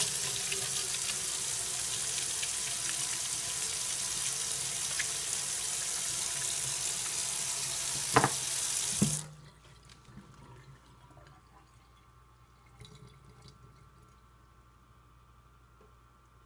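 Water from a faucet running over hands into a stainless steel sink, rinsing off soap lather. Two sharp knocks come just before the water stops, about nine seconds in. After that only faint wet sounds of the hands remain.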